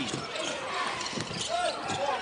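Game sound of a live basketball game in an arena: on-court play noise over crowd murmur, with some voices in the mix.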